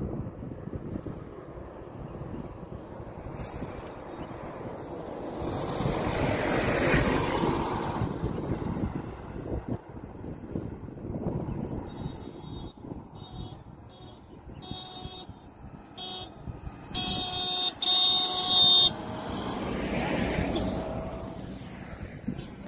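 Road traffic: a vehicle goes past, then a vehicle horn gives a string of short toots and two loud, longer blasts about three-quarters of the way through, and another vehicle passes near the end.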